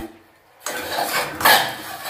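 A steel spoon stirring roasted makhana (fox nuts) in a metal kadhai, scraping and clinking against the pan. It starts about half a second in, with the loudest clatter about one and a half seconds in.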